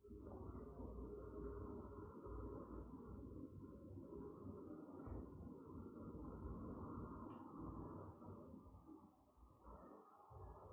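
Faint crickets chirping in a steady, pulsing high-pitched trill over low background noise.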